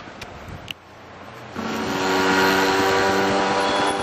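Motor vehicle engine running close by: a steady, many-toned droning hum that comes in suddenly about a second and a half in and holds loud to the end.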